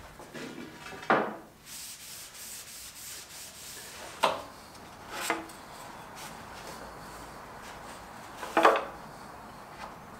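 Pine boards being distressed: four sharp knocks on the wood a few seconds apart, with a stretch of scraping and rubbing on the surface between the first two.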